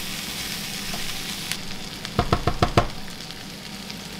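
Beef strips, capsicum and onion sizzling in a non-stick frying pan as a spatula stirs them through grated cheese and parsley, with a quick run of five or six sharp knocks of the spatula on the pan a little past halfway.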